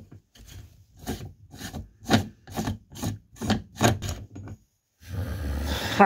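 A large 41 mm Stahlwille steel socket twisted back and forth by hand over a connector's hex nut, metal scraping on metal in about a dozen short strokes, roughly three a second. Near the end a louder rustling handling noise as the socket is lifted.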